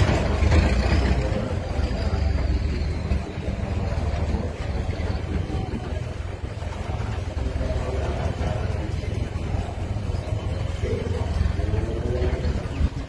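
Steady low rumble with faint voices of people in the background.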